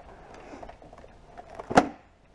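Hands handling a motorcycle helmet and its tucked-in lapel mic, with a soft, irregular rustle of padding, then one sharp click near the end.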